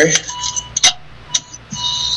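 Sharp clicks as the car's key is turned on, with a thin electronic warning chime sounding twice: the door-ajar warning, set off by the open trunk.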